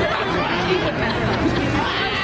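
Several people talking over each other at once: the chatter of a group milling about.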